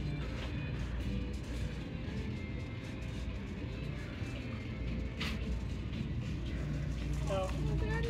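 Quiet shop background with a steady low hum and faint music playing, then a girl's short "Oh" near the end.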